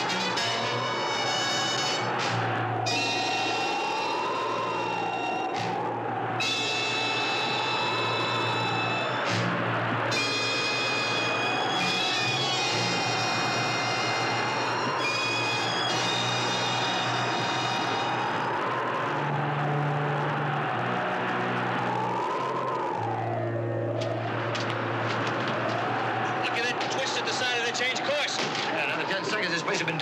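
Dramatic TV score with a whistling storm wind that rises and falls every couple of seconds.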